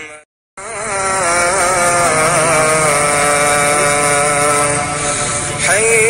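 A male voice chanting long, wavering, drawn-out notes, laid over the picture as a vocal soundtrack. It breaks off for a moment just after the start, then resumes.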